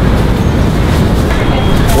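Steady low rumble of passing street traffic.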